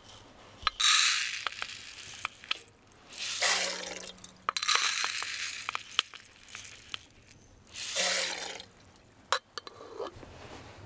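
Dry granules poured from a glass jar, measured in its screw lid and tipped into a metal mess tin: three pours of about a second each, with small clinks of glass and metal between.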